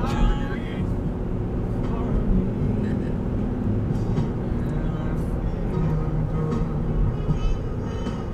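Steady road and engine rumble inside a moving car's cabin, with a song playing on the car stereo. A person gasps and says "oh" right at the start.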